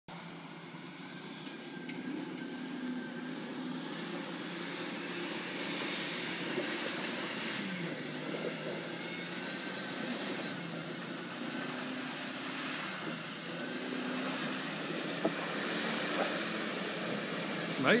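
Stock Jeep Wrangler TJ's engine working under load as it climbs a muddy dirt hill, its revs rising and falling. It grows gradually louder as the Jeep comes closer.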